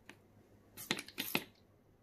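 Trigger spray bottle of alcohol spritzed over freshly poured epoxy resin to pop surface bubbles: a quick run of four or five short sprays about a second in.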